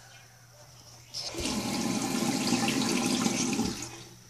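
Water running in a bathroom, starting sharply about a second in and stopping just before the end, close to three seconds of steady rushing.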